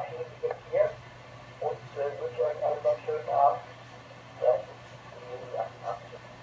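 A voice talking over an amateur radio transceiver's speaker, thin-sounding with little bass or treble, in short broken phrases. A steady low hum runs underneath.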